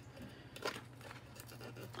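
Painter's tape, stiffened with spilled epoxy resin, crinkling as it is peeled off the back of a glass tray.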